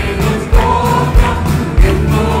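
Live worship band with singers performing a Malayalam Christian worship song: voices over guitars, bass and keyboard, with a kick drum on a steady beat a little under two beats a second. A note is held through the middle.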